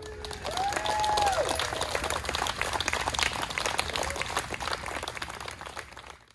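A group of people clapping and applauding, many hands at once. A couple of voices call out with rising and falling whoops in the first two seconds. The clapping thins out toward the end and then stops abruptly.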